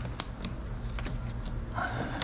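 Hands handling a nylon ratchet strap: the webbing rustles and the metal buckle gives a few light clicks, over a steady low hum.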